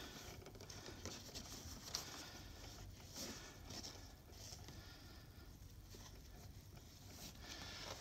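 Faint rustling of a cloth bandage being pulled around a cardboard box splint and tied, with a few soft clicks of cardboard being handled.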